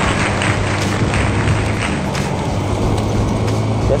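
Honda Click 125i scooter's single-cylinder four-stroke engine running steadily while riding, mixed with road and wind noise on the microphone.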